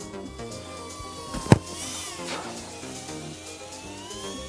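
Background music over the whine of an FPV cinewhoop drone's motors, drifting up and down in pitch, with one sharp thump about a second and a half in.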